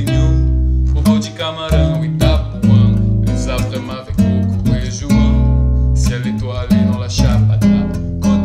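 Live band music: acoustic guitar strumming chords over a bass line, an instrumental stretch without singing.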